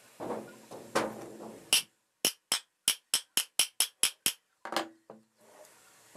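Metal ceiling fan motor housing handled and turned by hand on a workbench: a few knocks, then a run of about ten sharp clicks, about four a second, and a couple more knocks near the end.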